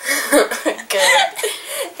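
A young woman coughs about once at the start, then laughs.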